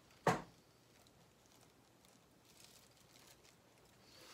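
A single short knock about a quarter second in, then faint rustling from plastic model-kit parts and bags being handled.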